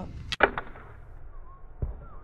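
Homemade bamboo longbow shot: a sharp snap of the string on release about a third of a second in, then a dull thump near the end as the arrow strikes the target.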